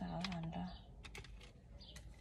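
A few light, sharp clicks of sunglasses being handled, with a short hummed 'mm' at the start.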